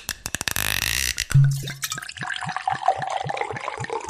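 Liquid poured from a bottle, glugging in short repeated gulps about four to five times a second, after a quick run of clicks in the first second.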